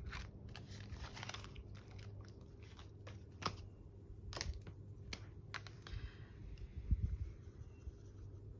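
Hands handling a cash binder, its plastic pockets and a polymer banknote: scattered light clicks and crinkles, with a soft knock about seven seconds in.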